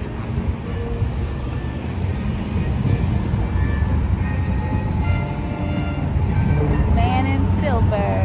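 Road traffic on a city street, a steady low rumble of passing cars, with music playing underneath and a brief voice near the end.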